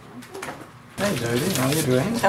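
Unscripted voices of people greeting each other, a man's low voice among them. The voices start up suddenly about a second in after a quieter stretch.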